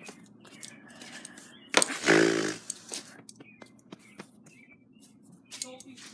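Small clicks, knocks and rustles of objects being handled while rummaging through a box, with one sharp click and then a short, loud vocal sound, like a hum or 'ooh', about two seconds in.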